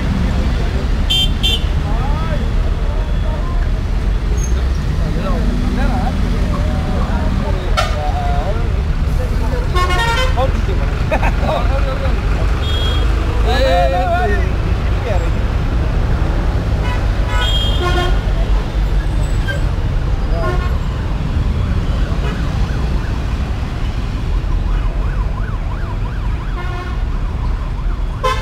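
Street traffic and motorcycle engines making a dense, steady low rumble, with people's voices scattered through it and a few short horn toots.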